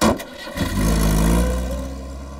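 A short loud bang, then a motor vehicle engine starting and settling into a steady low run.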